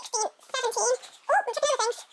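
Speech only: a high-pitched voice in quick short syllables, counting clothes.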